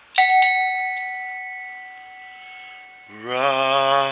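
Handmade copper bell struck once, ringing with a clear, steady tone that fades away over about three seconds.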